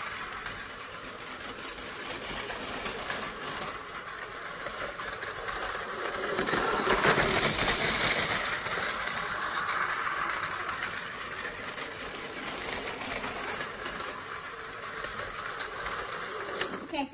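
Tomy Plarail battery-powered toy train running on plastic track: a steady small-motor whir with fine clicking from the wheels. It grows louder about six to nine seconds in as the train passes close, then eases off.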